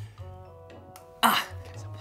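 Soft background music with steady held notes, and about a second in a man's short, breathy "ah!" exclamation, close to a cough.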